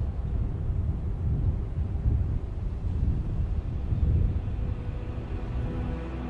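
A deep, uneven rumble, mostly in the low range and without a clear pitch; a faint held tone creeps in near the end.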